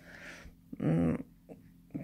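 A young baby's short vocal sound, a brief coo about a second in, with soft breathy noise before it.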